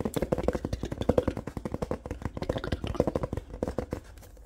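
Fingertips tapping rapidly on the card cover of a paperback manga volume, about a dozen quick, even taps a second with a hollow ring to them.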